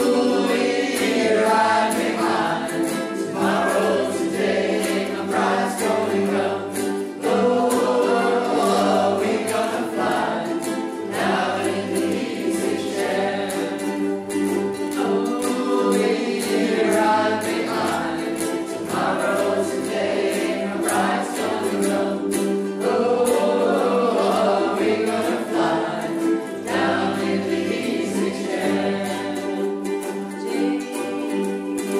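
A group of voices singing together in unison over strummed ukuleles and acoustic guitars, a steady folk song played without pause.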